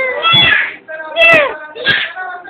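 A little girl's high-pitched squeals and laughter in three short bursts, the pitch sliding down within each, the loudest a little past a second in.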